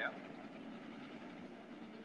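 Speedcar engines running on a dirt oval, heard as a faint, steady low rumble.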